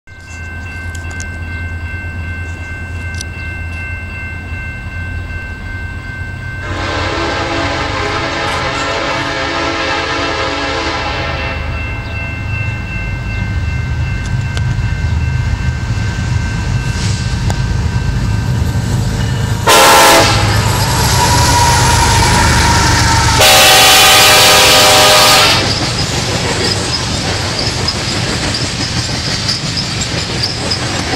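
BNSF freight train's diesel locomotive approaching with a low rumble that grows louder, sounding its air horn: a long blast about seven seconds in, a very loud short blast around twenty seconds, then a long loud blast a few seconds later. Near the end the freight cars rumble past.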